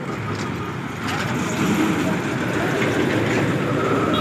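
Ten-wheeler cement mixer truck driving past close by, its diesel engine and tyres getting louder about a second in as it comes alongside.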